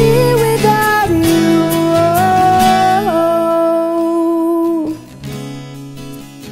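A woman singing long, held wordless notes that step between pitches over an acoustic guitar accompaniment. Her voice stops about five seconds in, and the guitar carries on more quietly.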